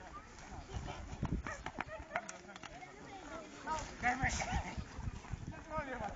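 Outdoor voices talking and calling out, several times, over scattered thuds of footsteps from players running on a dirt field.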